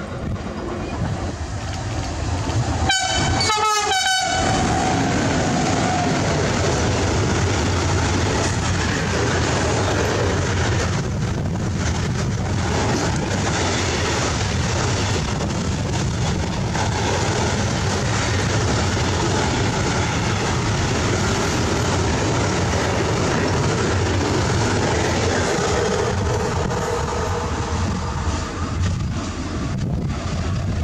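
Freight trains passing close by at speed, the wagons rumbling and clattering over the rails throughout. About three seconds in, a train horn gives two short blasts.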